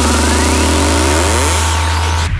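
Hardstyle DJ mix build-up: a held deep bass note under sweeping synth effects, with a riser climbing steeply in pitch near the end.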